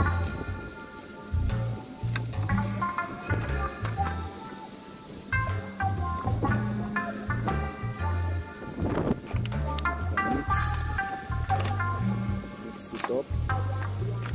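Background music: a bass line changing every half second or so under held chords.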